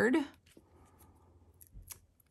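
A spoken word trails off at the start, then faint rustling of a paper card panel being handled, with a light tick near the end.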